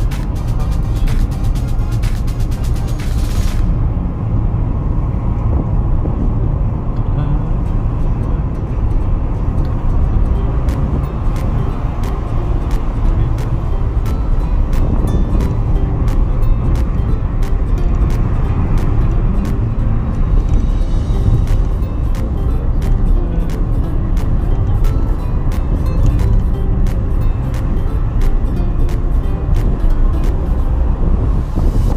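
Steady low road and engine rumble from inside a moving car, with music playing over it.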